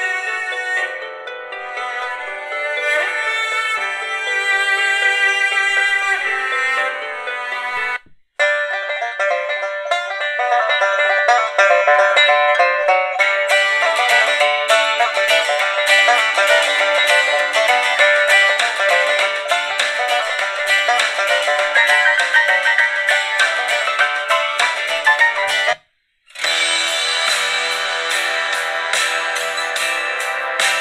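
Vigurtime VT-16 kit radio playing FM-broadcast music through its small speakers, thin and without bass. It starts with a cello piece; after a brief silence about eight seconds in comes a banjo-led country-folk tune, and after another short gap near the end a rock track with guitar begins.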